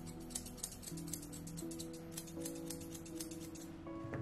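Grooming shears snipping through a dog's tail hair in a quick run of snips, about five a second, stopping just before the end, over steady background music.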